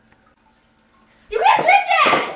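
A short pause, then a girl's loud, drawn-out vocal cry starting just over a second in.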